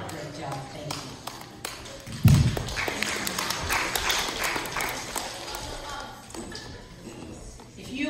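A handheld microphone thumps loudly about two seconds in as it is handled, followed by a few seconds of indistinct voices and small taps from the congregation.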